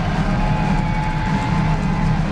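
Live rock band playing loud with distorted electric guitars, bass and drums, heavy and overloaded in the low end, with a held guitar note ringing over the top.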